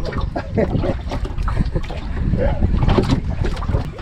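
Wind buffeting the microphone over open sea, a steady rumble with scattered short knocks and faint snatches of voice.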